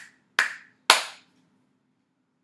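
Hands clapping three times, about half a second apart, with the loudest clap last. The clapping hands are the crocodile's snapping jaws, done in place of the dropped word 'crocodile'.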